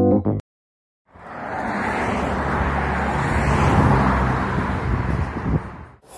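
Road traffic noise with a low vehicle rumble. It fades in about a second in after a short silence, builds to a peak and fades away near the end.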